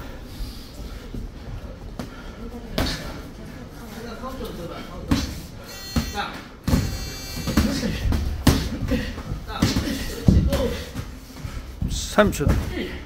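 Boxing gloves smacking as punches land in a sparring exchange: about five sharp hits a second or two apart, coming closer together in the second half, with voices in between.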